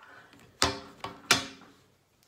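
Two sharp plastic clicks about 0.7 s apart, each with a brief ringing tail, as a whiteboard marker's cap is worked on and off.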